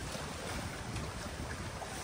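Fast, turbulent water rushing through a breached beaver dam in a drainage channel, with wind buffeting the microphone.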